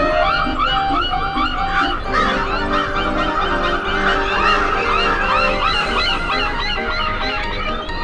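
A flock of cartoon crows calling, many short harsh caws and squawks overlapping continuously, over orchestral score.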